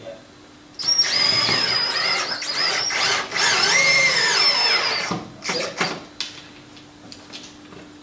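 Cordless electric drill driving a fastener through a wooden rubbing strake into a boat hull. It runs for about four seconds with a high whine whose pitch rises and falls, then stops, followed by a couple of knocks.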